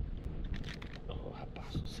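Wind rumbling on the camera microphone, with bursts of sharp crackling clicks about half a second in and again near the end.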